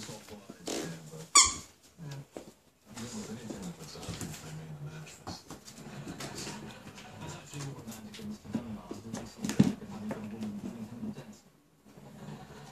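Small dog playing with a plush toy on a wooden floor, with a sharp squeak about a second in that falls in pitch and another sharp sound near the end.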